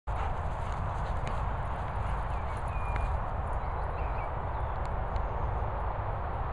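Wind rumbling on the microphone, with soft thuds of running footsteps on grass and a couple of faint short chirps near the middle.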